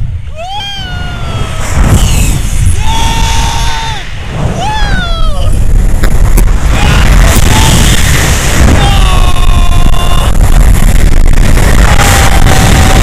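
Heavy wind buffeting on the action camera's microphone in flight, with a man's high-pitched screams and whoops of joy over it: several long cries that bend up and down in the first half, and a long held yell about three-quarters of the way in.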